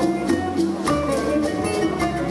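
Live Cuban son band playing an instrumental phrase between sung lines: a Cuban laúd and an acoustic guitar plucking over bass notes and light percussion.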